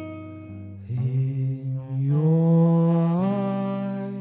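Slow jazz ballad: guitar chords, then a long held sung note over the guitar that slides up in pitch about three seconds in.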